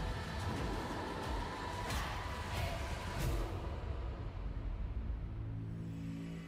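Dark, ominous trailer music with a deep rumble and two sharp whooshing hits, about two and three seconds in, settling into a low held drone.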